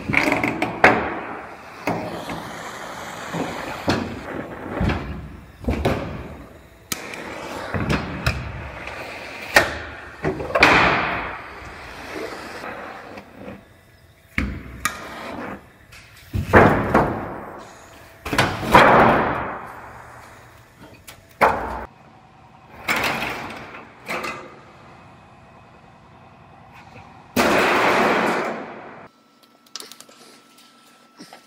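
Body-shop tool work on a truck roof in a string of short pieces: a handheld gas torch hissing at first, later bursts from a cordless drill along the roof seam, with knocks and clatter between them.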